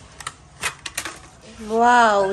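A few sharp, light clicks and taps of hard plastic as a toy pen is handled, then a drawn-out vocal sound starting near the end.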